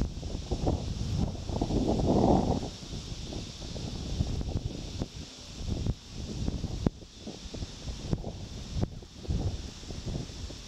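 Wind gusting on the microphone in uneven low rumbles, strongest about two seconds in, over a steady high-pitched background hiss.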